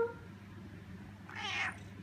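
A domestic cat gives one short meow, falling in pitch, about a second and a half in.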